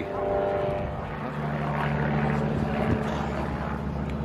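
A motor engine running steadily nearby, a hum with a higher tone in the first second that gives way to a lower, stronger drone about a second in.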